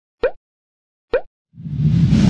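Two short popping 'bloop' sound effects, each gliding upward in pitch, about a second apart, as the animated subscribe button is tapped. Then a loud whoosh swells in near the end.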